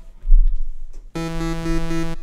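VPS Avenger software synthesizer: a deep low thump a quarter second in, then a held synth chord sounded from the keyboard about a second in, lasting about a second with a slight pulsing.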